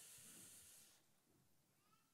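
Near silence: a faint high hiss for about the first second that fades out, then room tone.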